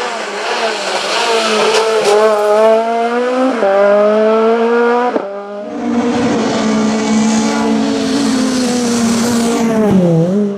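VW Golf Mk3 hillclimb car with a 1984 cc 20-valve engine and sequential gearbox accelerating hard close by, the engine note climbing through the revs with quick upshifts about three and a half and five seconds in. About five and a half seconds in the sound changes abruptly to the car heard from farther off, held at high revs with its pitch slowly easing.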